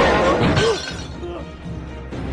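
Cartoon crash sound effect with shattering, from a man being thrown onto a sofa, over background music; a short cry comes in the middle of it. The crash dies down within the first second, leaving the music.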